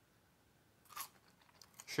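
A brief crunch about a second in as a Cajun french fry is bitten, followed by a few faint chewing sounds.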